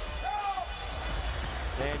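Basketball game sound on a hardwood court: an arena crowd murmuring, the ball bouncing, and one brief sneaker squeak early on.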